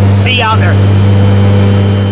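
Skydiving jump plane's engine and propeller drone inside the cabin during flight: a loud, steady hum, with a brief burst of a voice about half a second in.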